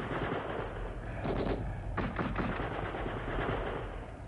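Rapid, continuous machine-gun fire, a dense rattle of shots with louder bursts about a second in and again about two seconds in, over a low steady rumble.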